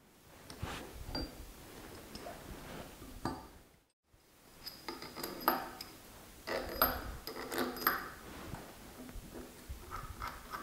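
Metal clinking and knocking as steel lathe chucks, a hex key and screws are handled on a cast-iron drill press table, some knocks leaving a short metallic ring.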